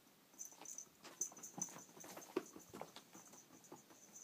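Faint, irregular light steps and clicks on a tiled floor.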